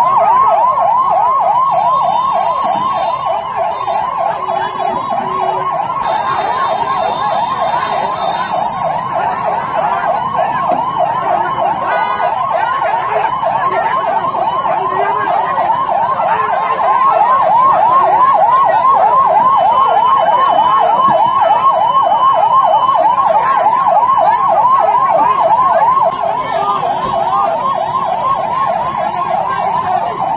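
Emergency-vehicle siren in a fast yelp, its pitch sweeping up and down several times a second without a break. It gets somewhat louder past the middle and drops back a little near the end.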